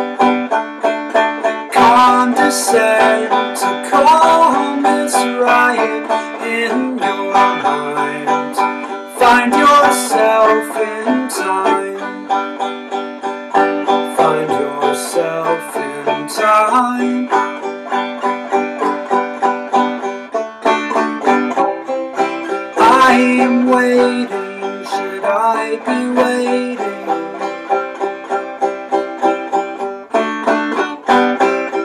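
Five-string banjo finger-picked in a steady run of evenly repeated notes, with a few louder, brighter stretches.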